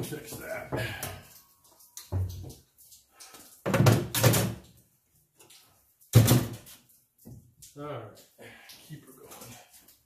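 Hand tools, a handsaw and a hammer, being lifted off a wall rack and set down on a wooden workbench: a series of knocks and clunks, with a loud one about four seconds in and a sharp one about six seconds in.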